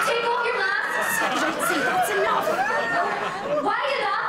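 Several voices talking over one another in excited chatter, with no single clear line of speech.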